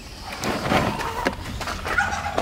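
Plastic pet carrier scraping and knocking against the wire crate and the back seat of a pickup as it is slid out, a rustling scrape that swells about half a second in.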